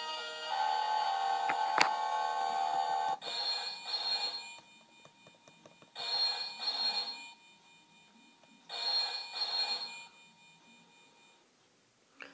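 Electronic Deal or No Deal 'Beat the Banker' game sounding a held electronic chord through its small speaker, then a synthesized telephone ring: three double rings about 2.7 s apart, the banker's call signalling an offer.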